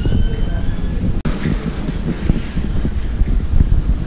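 Low rumble and irregular soft knocks of a handheld camera being carried while walking with bags. The sound briefly cuts out about a second in.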